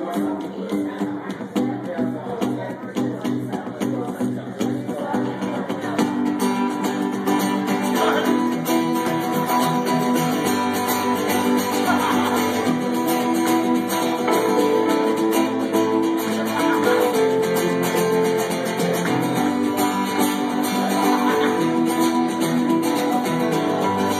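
Strummed acoustic guitar and electronic keyboard playing a song's instrumental intro, with no singing yet. The playing grows fuller and louder about six seconds in.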